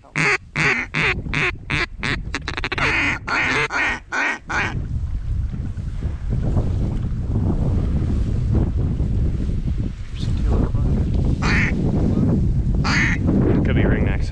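A duck call blown in a rapid run of loud quacks, about three a second, for roughly four and a half seconds. Then steady wind rumble on the microphone, with a few short quacks near the end.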